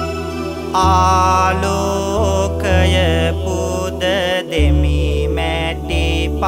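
Sinhala Buddhist devotional verse chanted melodically by a male voice over keyboard accompaniment with a steady bass. The voice comes in with ornamented, wavering phrases about a second in, after a short instrumental passage.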